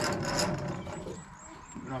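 Sheep scuffling along a wooden race, hooves and bodies knocking and rubbing on the timber, loudest at the start and quieter after.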